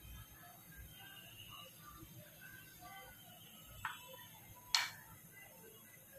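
Two sharp knocks, a wooden spatula tapped against the rim of a nonstick frying pan, the second louder, over faint background music.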